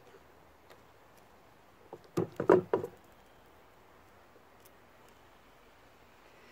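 Wire cutters snipping the ends of chicken wire: a few faint clicks, then a quick cluster of sharp clicks and knocks about two seconds in.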